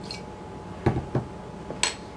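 Two dull knocks about a second in, then a sharp ringing clink of a metal teaspoon against a glass mason jar near the end as a spoonful of vinegar is tipped in.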